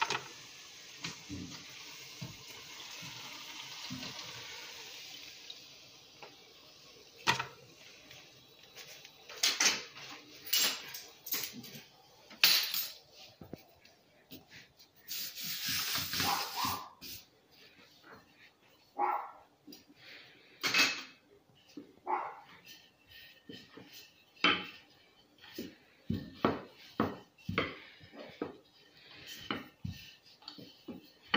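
Hot frying oil sizzling steadily for the first few seconds, fading out, followed by scattered knocks and clatter of utensils and a wooden rolling pin on a tiled kitchen counter.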